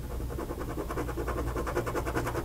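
Pen scribbling rapidly back and forth on paper, shading an area dark, with quick even strokes about ten a second.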